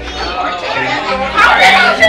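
Chatter of many people talking at once around picnic tables, with no single voice standing out; it grows louder about halfway through.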